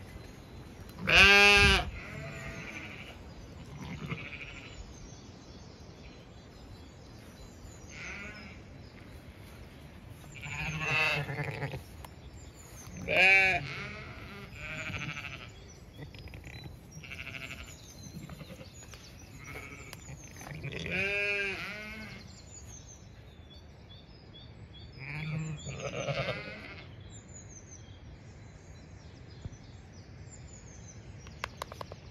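Zwartbles sheep bleating: five calls, the loudest about a second in, with birds chirping faintly in the dawn chorus behind.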